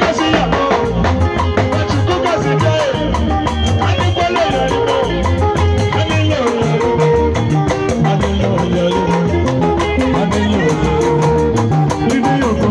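Live band music from an Ika musician: guitar lines over a bass line and a steady drum beat, mostly instrumental.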